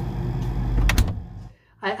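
Low steady rumble from close to an open refrigerator, then the refrigerator door shutting with a sharp knock about a second in.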